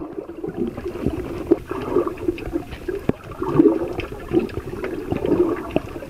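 Water sloshing and gurgling around a camera filmed underwater, an uneven churning with scattered small clicks.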